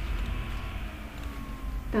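Steady low background hum with faint thin high tones over it, and no speech.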